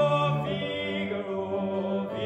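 Operatic voice singing held notes over grand piano accompaniment, the note changing about two-thirds of a second in.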